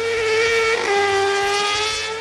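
Car-cross buggy's engine held at high revs, a high buzzing whine with many overtones; the pitch drops a little about a second in and then holds steady.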